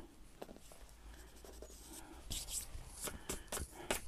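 Hands rubbing and pressing paper cutouts flat on a collage page: soft paper brushing at first, then a quick run of sharper paper scuffs and rustles in the second half.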